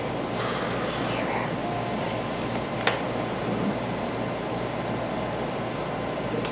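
Steady hiss and hum of a room fan running, with faint voices in the first second or so and one sharp click about three seconds in.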